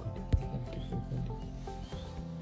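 Rubbing handling noise and one sharp knock about a third of a second in, from the camera being moved, over background music with long held notes.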